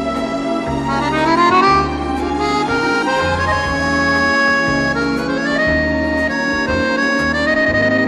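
Accordion playing a melody of held notes, some sliding into the next, over a light orchestral backing with a steady, moving bass line.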